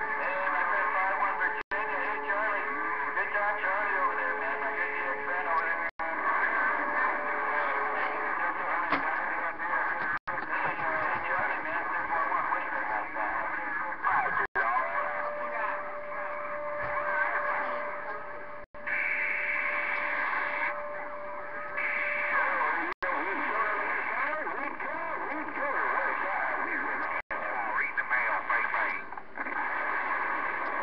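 Galaxy radio transceiver's receiver playing a noisy long-distance channel: a steady rush of static with weak, garbled voices buried in it and steady whistle tones from carriers that come and go. The sound drops out for an instant about every four seconds. The noise marks rough propagation conditions.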